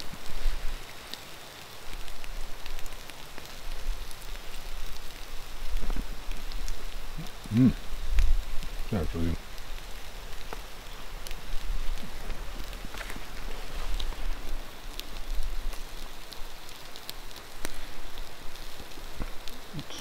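Campfire coals crackling and food sizzling on a wire grill over them: a steady hiss with many small sharp pops scattered through it.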